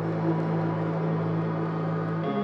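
Organ music holding one sustained chord, the musical bridge that closes the drama's story.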